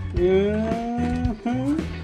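A man's drawn-out wordless vocal sound, one long held note lasting just over a second with a slight rise in pitch, then a brief second one, over steady background music.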